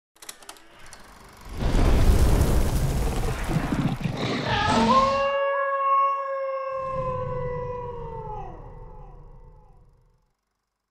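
Logo sting: a loud rushing rumble for a few seconds, then a long wolf howl that rises, holds its pitch, and bends down as it fades out near the end.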